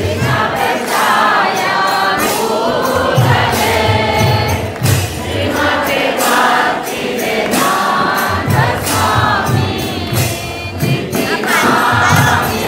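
Devotional kirtan: a group of voices singing a chant together over a steady beat of drum strokes and jingling hand cymbals.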